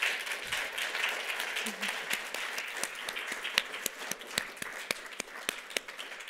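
Audience applauding: many hands clapping in a dense patter that gradually thins and fades toward the end.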